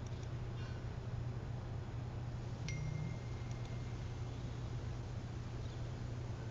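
Faint steady low hum from an open microphone, with a single short chime-like tone about two and a half seconds in, starting with a click and held steady for about a second and a half.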